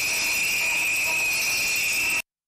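Many hand bells rung together by a group of people: a dense, continuous high jangling ring.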